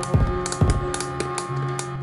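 Background music with a drum beat, over which a quick run of sharp clicks comes from a plastic ratchet buckle on an inline skate being ratcheted tight, starting about half a second in.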